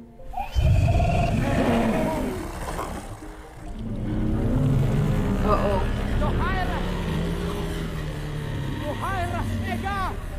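A film sound effect of a huge dragon's deep rumbling growl, starting about half a second in, over dramatic music. Short rising-and-falling voiced calls come near the middle and again near the end.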